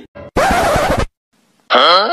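A bag zipper pulled open in one short rasping stroke, starting and stopping abruptly. Near the end comes a brief voice cry that rises and falls in pitch.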